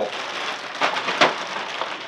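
Plastic zip-top bags crinkling and rustling as they are handled and set down on a tabletop, a dense crackle with many small sharp ticks.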